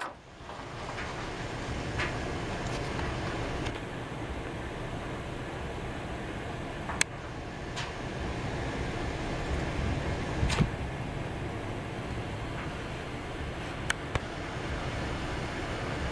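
Steady background hum and hiss with no clear source, broken by a few brief, sharp clicks spaced several seconds apart.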